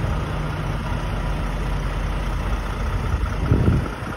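Diesel semi-truck engine idling with a steady low rumble, and a short louder burst about three and a half seconds in.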